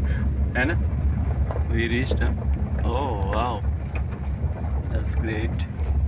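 Steady low rumble of a Honda car rolling slowly, heard from inside the cabin, with a few short bits of talk over it.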